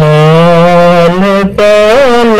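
A solo voice singing a Punjabi naat, an Islamic devotional song, drawing out long held notes with a brief break a little past halfway.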